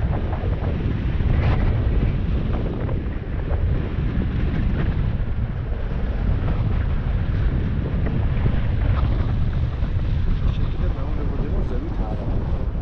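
Wind buffeting the microphone in flight under a paraglider: a steady, heavy low rumble of rushing air.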